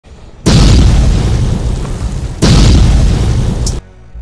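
Two deep cinematic boom hits from an edited-in intro soundtrack, about two seconds apart, each ringing out; the second cuts off sharply near the end after a short high swish.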